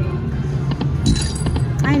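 Piggy Bankin slot machine playing its electronic spin music over a steady casino hum, with a bright clinking chime a little over a second in.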